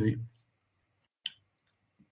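A man's voice trailing off, then dead silence broken once by a single short click about a second and a quarter in.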